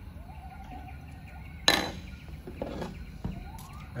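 Calipers and a flashlight being handled over a table, with one sharp knock a little before halfway and a softer one later. Faint tones glide up and down in the background.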